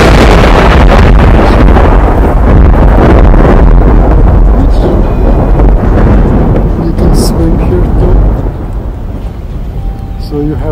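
Thunder: a loud, long rumble that breaks in suddenly and holds heavy and deep for about eight seconds before easing off near the end, as a rain storm comes in.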